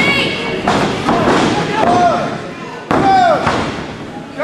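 Wrestling ring: a couple of sudden thuds of bodies on the ring mat, among loud drawn-out yells and shouts from voices in the hall.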